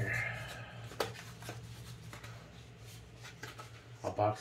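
Hands opening a small cardboard box and working its contents out: soft cardboard and paper rubbing, a sharp click about a second in and a few lighter ticks, over a steady low hum.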